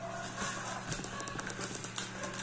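Plastic packaging crinkling and cardboard rustling as items are handled inside a box, a quick run of small crackles and clicks.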